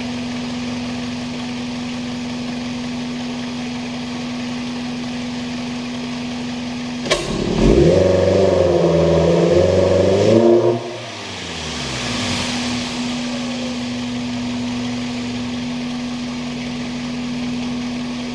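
A 2000 Toyota Previa's 2.4-litre four-cylinder engine idling, then snapped to full throttle about seven seconds in with a click. The revs climb and hold unevenly for about three seconds, then drop back to a steady idle. Its dirty mass airflow sensor reads only about half the voltage it should at full throttle, so the engine runs lean at high revs.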